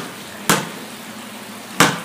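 Basketball bouncing twice on a concrete floor, each bounce a sharp smack, about a second and a quarter apart.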